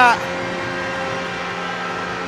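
Steady, even background noise of an ice rink broadcast feed, a constant hum with faint held tones and no sudden events.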